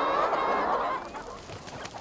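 A large flock of brown laying hens squawking and clucking all at once, a dense chorus that is loudest in the first second and eases off after.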